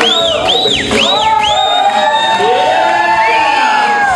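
Music playing loudly with a crowd cheering and whooping, a quick run of high rising-and-falling glides in the first second.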